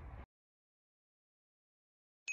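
Near silence: a brief trace of faint background noise that cuts off abruptly a moment in, then dead digital silence.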